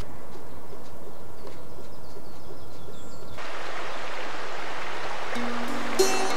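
Faint outdoor ambience with a few light bird chirps, then, from about halfway, the steady rush of a river running over rocky shallows. Soft instrumental music with held notes comes in near the end.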